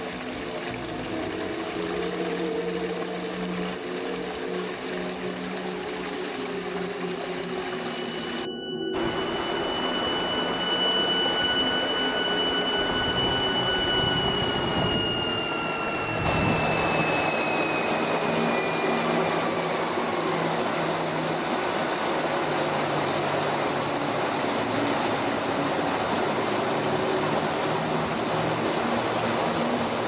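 Flowing brook water under ambient music: low sustained tones at first, then the water rises to a steady rush from about ten seconds in while a high held tone slowly glides downward and fades.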